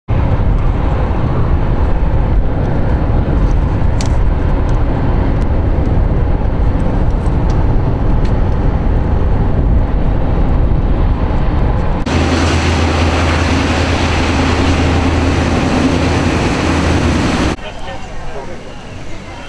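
Loud, steady road and engine noise heard from inside a moving vehicle on a highway. About twelve seconds in the sound changes abruptly to a steadier noise with a low hum underneath.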